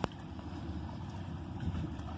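Steady low rumble of wind buffeting the phone's microphone outdoors at the beach, with a sharp click right at the start.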